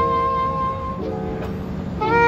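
Trumpet holding a long note, then dropping to a lower held note about a second in, in a jazz quintet with piano, bass and drums underneath.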